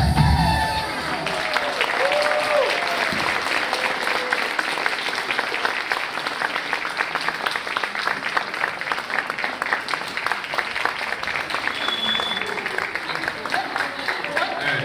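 Audience applauding as a folk dance ends. The dance music dies away about a second in, and the clapping continues steadily after it.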